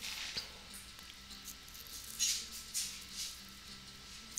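Faint computer keyboard typing and a mouse click, a few soft short taps, over a low steady electrical hum.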